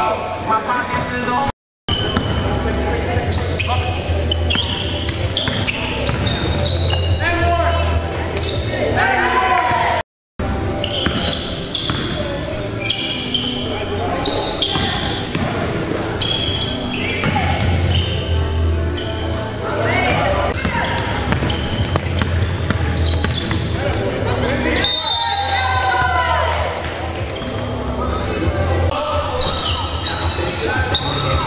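Live game sound of indoor basketball in a large, echoing gym: a ball bouncing on the court amid players' indistinct shouts and the short sharp sounds of play. The sound drops out briefly twice, about 2 and 10 seconds in.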